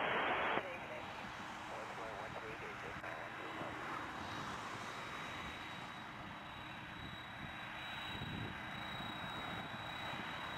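A tower radio call cuts off about half a second in, then the steady noise of an Air Canada Rouge Boeing 767's twin jet engines at low power as it turns onto the runway, with a thin high whine held throughout.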